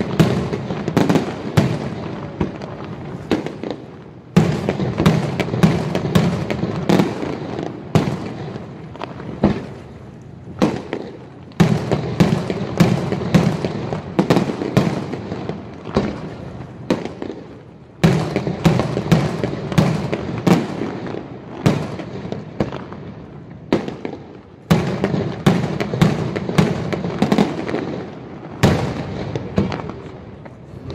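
Aerial firework shells bursting in rapid succession in a professional display: a dense run of sharp bangs, with fresh volleys starting up every several seconds.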